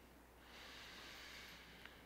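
A faint, soft breath lasting about a second, with a tiny click near the end.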